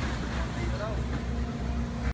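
Steady low rumble of outdoor background noise, with faint distant voices.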